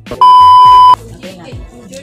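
A loud, steady, high-pitched test-tone beep, the TV colour-bars sound effect, lasting just under a second near the start and cutting off abruptly. Background music with a steady beat plays under it and carries on afterwards.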